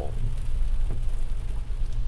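Steady low rumble of a moving car heard inside its cabin: road and engine noise, with a faint hiss of tyres on a wet road.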